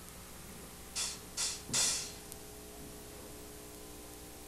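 Steady low hum from idle stage amplifiers, with three short hissing noises in quick succession about a second in, the last one the longest.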